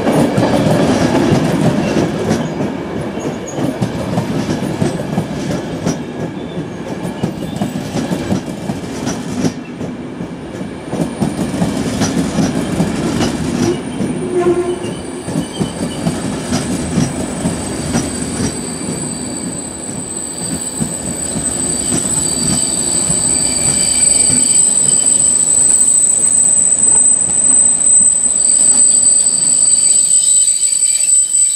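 Passenger train coaches rolling past on the rails with a steady low rumble, slowing down. From about a third of the way in a high, steady squeal sets in from the wheels as the train slows, getting louder near the end.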